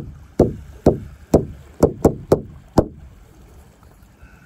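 Large painted frame drum struck in a steady, even beat of about two strikes a second, each stroke ringing deeply and fading before the next, with one lighter extra stroke about two seconds in; the beat stops about three seconds in.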